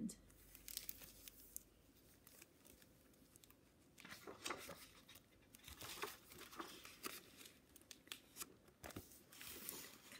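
Faint crinkling and rustling of a hardcover picture book's clear plastic library jacket as the book is handled and opened, and a page is turned. The crackling is sparse at first and grows busier about four seconds in.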